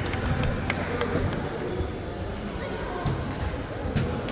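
A basketball bouncing on a hardwood gym floor, a few sharp thuds, most in the first second and one near three seconds in, over the chatter of voices.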